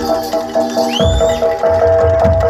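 Live percussion music with a repeating two-note mallet pattern over low drum beats. About a second in, a short high squeal glides up and then falls back.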